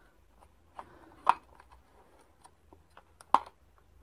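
Small clicks and handling of a plastic Pupa makeup kit as its round, hinged trays are swung open, with two sharper plastic clicks, one about a second in and one near the end.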